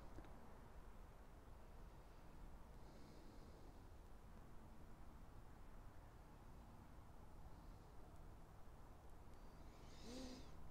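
Near silence: faint, steady background hiss of a quiet night.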